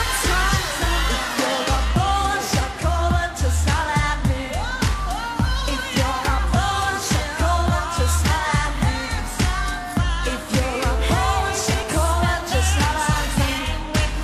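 Pop song playing, with a steady beat, a strong bass line and a sung melody.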